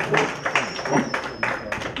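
A small audience clapping, several claps a second, with some voices mixed in underneath.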